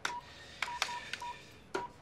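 Fax machine keypad being pressed repeatedly: a run of about five short, single-pitch electronic beeps with sharp button clicks, as someone tries to get stuck faxes through the machine.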